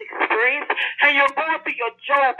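Continuous preaching speech, narrow and thin in sound as over a telephone line.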